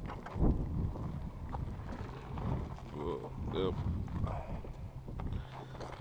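Electric wheelchair moving over a steep dirt slope: low rumble with wind on the microphone, a thump about half a second in, and a faint steady motor hum in the second half, with low voices around the middle.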